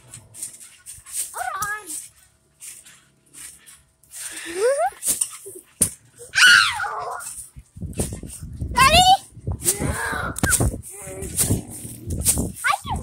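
Girls squealing and shrieking with laughter as they bounce on a trampoline, several high rising squeals. From about eight seconds in, repeated low thumps and rumbling from the bouncing join in.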